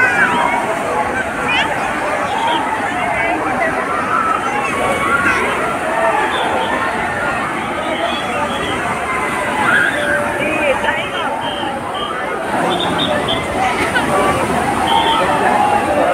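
Crowd of bathers in a wave pool chattering and shouting together over the steady wash and splash of waves.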